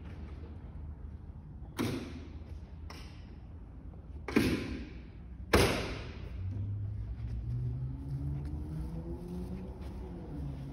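Metal over-centre latches on a camper trailer's body being snapped shut to lock the closed lid: a few sharp clacks, the two loudest about a second apart.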